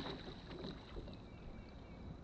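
Water splashing from a hooked fish thrashing at the surface beside the boat, dying away within the first half second, followed by quiet lapping and light wind.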